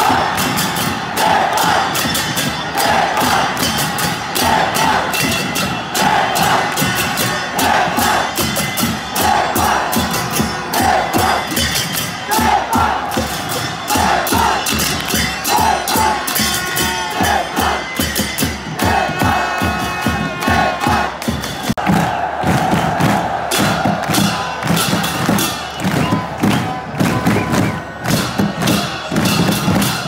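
Football stadium crowd chanting and cheering in unison over a fast, steady beat, with the shouts coming roughly once a second. Past the middle they swell into a longer held shout.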